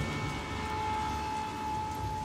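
A steady low rumble with a sustained high ringing tone held over it, fading near the end: a tense drone from a film score's sound design.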